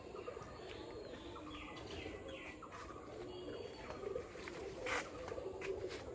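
Faint bird calls: doves cooing low and small birds chirping in short falling notes. A single sharp click about five seconds in.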